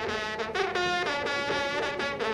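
Solo French hunting horn (trompe de chasse) playing a fanfare: a run of held brassy notes that change pitch every half second or so, with brief breaks between them.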